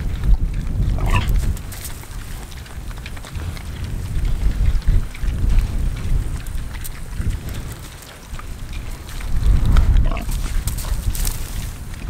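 Gusty wind buffeting the microphone with a loud, uneven rumble, over pigs grunting and eating feed in the mud.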